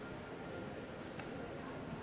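Street ambience: a low murmur of distant voices with a few scattered short clicks and knocks.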